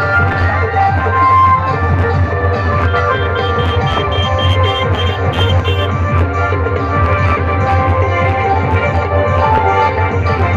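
Loud music blasting from a stacked array of horn loudspeakers, with a heavy, steady bass under melodic keyboard-like lines.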